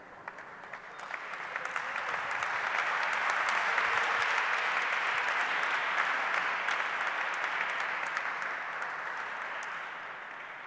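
Audience applauding: the clapping swells over the first few seconds, holds, and slowly dies away near the end.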